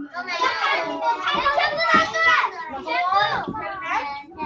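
A class of young children's voices, many calling out at once and overlapping.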